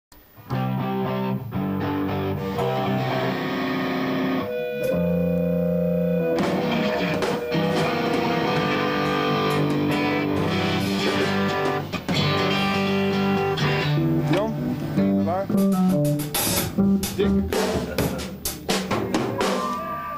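Rock band playing live in a studio: held keyboard chords with electric guitar, then drum hits come in thick and fast over the last few seconds.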